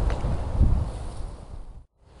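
Wind buffeting the camera microphone in uneven gusts, fading away and then cutting out to a brief silence near the end.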